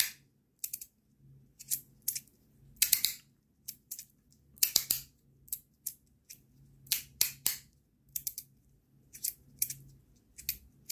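Magnetic haptic fidget slider (Rapt v2 with an Ultem body) being slid back and forth in the hand: its plates snap between the medium-strength magnet positions with sharp clicks. The clicks come irregularly, about one every half second to a second, some in quick pairs.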